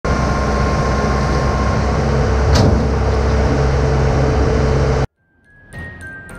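Case crawler excavator's diesel engine running with a steady whine, and a single sharp knock about two and a half seconds in. It cuts off suddenly about five seconds in, and a chiming music intro begins just before the end.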